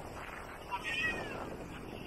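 Crowded beach ambience: a steady wash of surf and many distant voices. About a second in, one brief high call glides in pitch above it.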